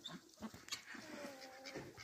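Faint farmyard animal sounds: a quiet, drawn-out call through the middle, with a few soft knocks around it.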